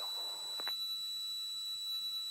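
Electrical whine on a light aircraft's headset and intercom audio line: a steady high-pitched tone, with a click about two-thirds of a second in, after which a second, fainter steady tone joins.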